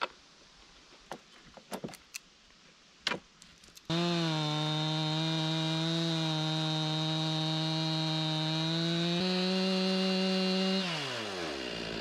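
A few light clicks and knocks at first. Then, from about four seconds in, a two-stroke Stihl MS 261 chainsaw mounted in a Granberg Alaskan small log mill runs at full throttle through a cedar log on a freshly sharpened chain, its pitch steady and stepping up a little near the end. About a second before the end the throttle is let off and the engine winds down.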